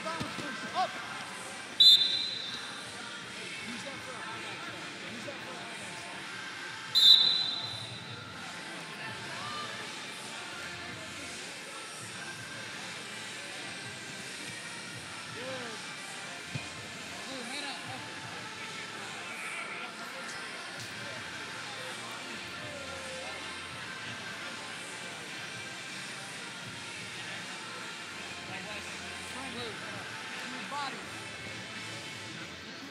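A referee's whistle blasts twice, each short and high-pitched, about five seconds apart, stopping the wrestling bout and then restarting it. Between the blasts and after them there is only the steady background hum of a near-empty arena.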